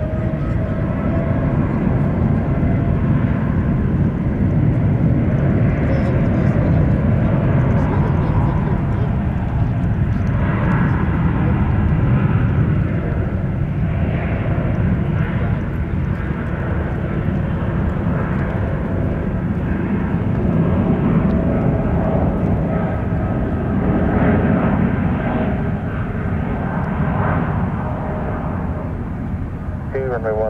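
Boeing 787 jet engines at takeoff thrust during the takeoff roll: a loud, steady rumble with an engine whine that rises in pitch over the first second and then holds.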